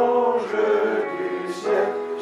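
Several voices singing a hymn together, holding notes that move from one pitch to the next every half second or so.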